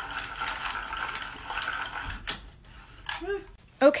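Yarn ball winder spinning as it winds yarn off a swift into a cake. It makes a steady whir for a little over two seconds, then stops with a click.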